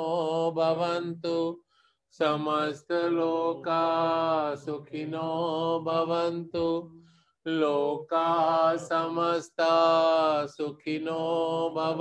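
A man chanting a Hindu devotional mantra solo and unaccompanied, in long held, sung phrases, with two brief breaks for breath.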